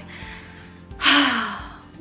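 A woman's sigh: a breathy exhale about a second in that trails off, after a short pause in her talk.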